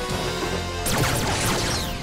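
Action-score music with a burst of crashing impact sound effects starting about a second in, as blasts strike a metal table held up as a shield.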